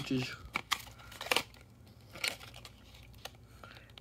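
Clear plastic clamshell tray holding an M.2 SSD crackling and clicking as it is handled, with a few sharp clicks in the first second and a half and quieter, sparser ones after.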